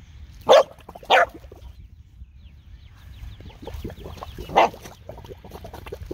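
A corgi giving three short, sharp barks, two in quick succession near the start and one more about four seconds in, aimed at water bubbling up from a sump pump discharge.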